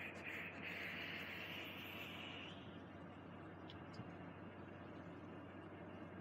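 A long draw on a vape: a steady, faint hiss of air and coil for about two and a half seconds that then stops, leaving only faint background noise while the vapour is held and let out.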